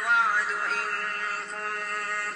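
A man's voice reciting the Quran in melodic tajweed style, drawing a phrase out in a long chanted line whose pitch glides and bends without a break.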